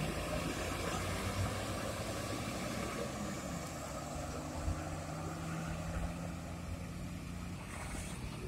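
Coach buses' diesel engines running as the buses pull away: a steady low engine hum. A held low engine tone comes in about three seconds in and lasts until near the end.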